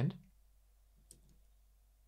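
A single faint computer mouse click about a second in, against near silence, just after the end of a spoken word.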